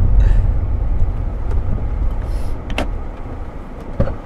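Low engine and road rumble inside a Fiat 500's cabin, dying away about halfway through as the car slows to a stop. A single sharp click comes just before the three-second mark.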